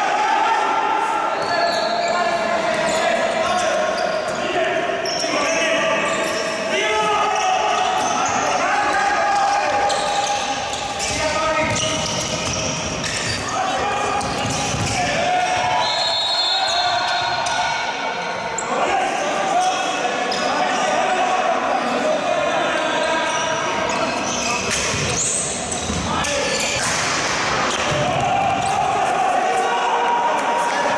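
Handball game sound in a reverberant sports hall: players and people courtside shouting and calling over each other, with the ball bouncing on the court. A short, steady, high whistle sounds about halfway through.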